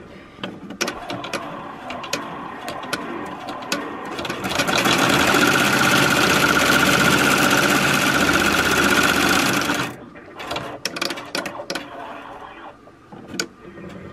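Melco Bravo multi-needle commercial embroidery machine stitching an outline through a doubled fabric square. Scattered clicking at first, then it stitches at speed with a steady whine for about five seconds and stops suddenly, followed by more clicking.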